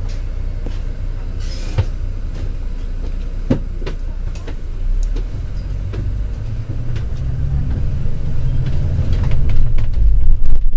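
Low engine rumble and road noise inside a moving double-decker bus, with a few sharp rattles or knocks from the bodywork. The rumble grows louder toward the end.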